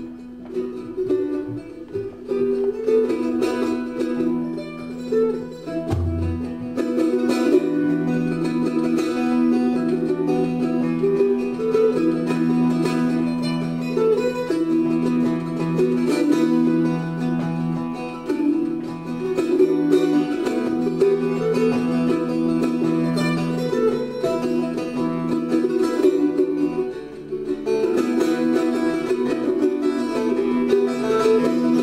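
Mandolin and Irish bouzouki playing the instrumental introduction to a slow Irish folk song: a plucked melody over steady held low notes, with a deeper note joining about four seconds in.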